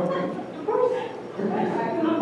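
Indistinct conversation of several people in a room, voices overlapping, with a louder raised voice about a second in.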